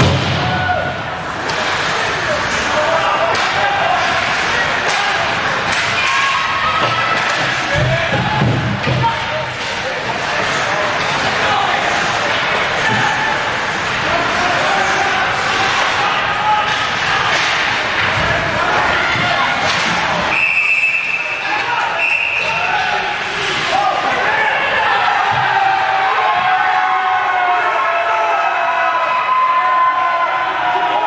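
Ice hockey rink during play: crowd voices and shouts over repeated knocks and thuds of sticks and puck against the boards. About two-thirds of the way through, a referee's whistle blows one steady blast of about two seconds, stopping play.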